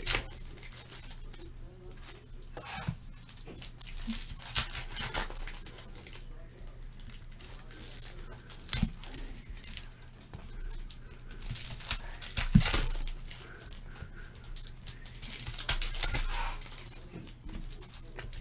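Trading cards and their foil pack wrappers being handled, a string of short crinkles, scrapes and tearing noises as cards are slid and flipped through, over a steady low electrical hum.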